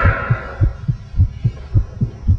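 Low heartbeat thumps in a horror film soundtrack, about two a second, each a strong beat followed by a softer one.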